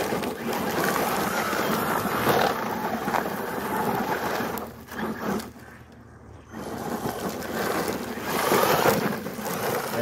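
Electric RC monster truck's motor whining and its tires spraying gravel as it drives and slides, dropping away briefly about halfway through, then coming back.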